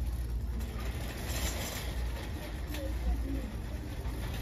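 Shopping cart rolling across a hard store floor, its wheels giving a steady low rumble, with a brief hiss a little over a second in and faint voices behind.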